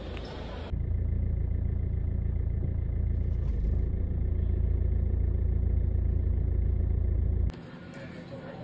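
A car heard from inside its cabin: a steady, loud low rumble with the higher sounds muffled, starting abruptly about a second in and cutting off just before the end.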